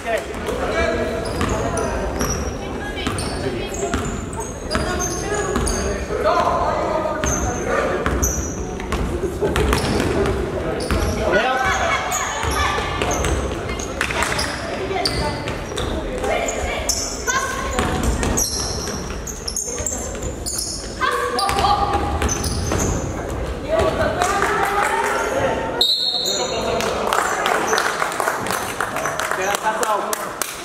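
A basketball being dribbled on a hardwood gym floor during play, with voices of players and spectators calling out, echoing in a large gym.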